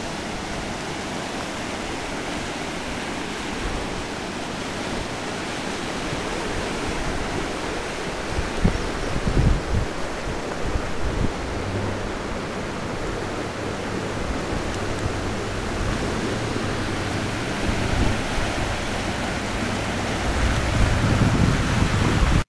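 Floodwater rushing steadily through a roadside ditch, with a few low gusts of wind on the microphone about nine seconds in and again near the end.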